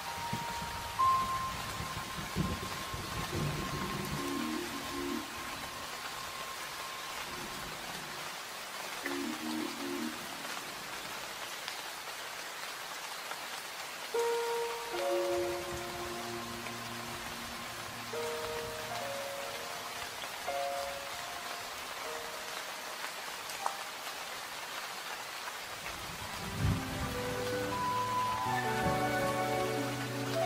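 Steady rain falling, with a low rumble a few seconds in. Soft, sparse melodic notes of background music come and go over it and build into fuller music near the end.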